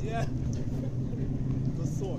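A boat's engine running steadily at a low, even hum.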